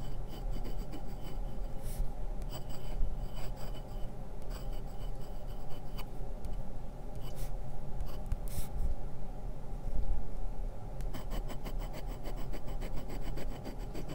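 Glass dip pen nib scratching across paper, close to the microphone, as words are written out. Near the end comes a quick run of short back-and-forth scratches as the pen draws a zigzag line.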